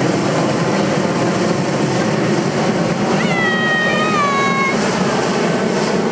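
Hot-air balloon's propane burner firing in one long blast, a steady loud roar. About three seconds in, a high call with several overtones rises and falls over it for about a second and a half.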